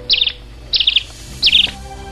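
Cartoon bird chirping: three short, high trilled chirps about two-thirds of a second apart, over soft background music.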